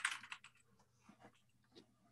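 Computer keyboard typing, faint: a quick run of key clicks at the start, then a few scattered keystrokes.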